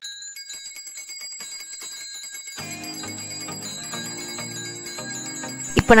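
Small brass puja hand bell rung rapidly and continuously during the lamp offering, its high ringing tones held steady. Music comes in about two and a half seconds in.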